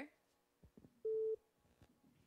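A single short beep on a telephone line, one steady tone lasting about a third of a second, about a second in.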